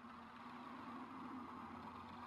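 Faint, steady background hum and hiss with a low held tone: a quiet lull in an anime soundtrack.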